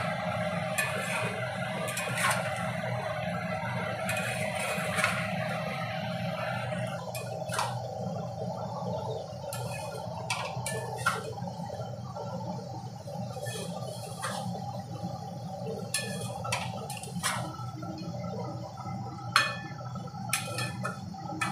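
A metal spatula and spoon stirring thick curry in a metal kadai, scraping and clinking against the pan: busy scraping for the first several seconds, then scattered single clinks. A steady low hum runs underneath.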